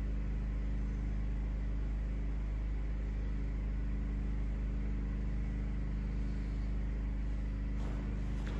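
A steady low rumbling hum with several constant tones in it, unchanging throughout, with no distinct impacts.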